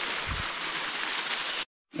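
Shallow creek water running over rocks: a steady, even watery hiss that cuts off suddenly near the end.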